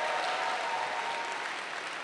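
Large audience applauding, the clapping slowly easing off.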